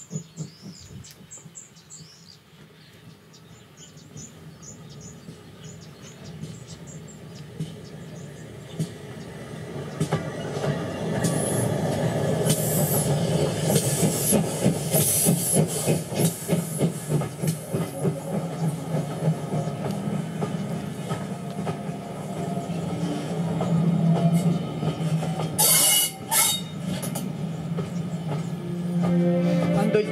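Steam train approaching and passing, its wheels clattering rhythmically on the rails, growing louder over the first dozen seconds, with bursts of steam hiss around the middle and again near the end.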